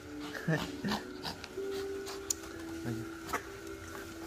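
A Shih Tzu making several short whining vocal sounds while being petted in an excited greeting.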